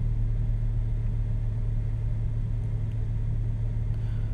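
A steady low rumble, even in level, with nothing else standing out.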